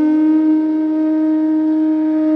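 Bansuri (bamboo flute) holding one long steady note in raga Bhairavi, over a faint low drone.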